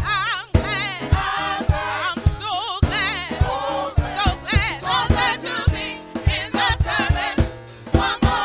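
Gospel praise team singing together into microphones, the voices wavering with vibrato, over an accompaniment with a steady low beat about twice a second.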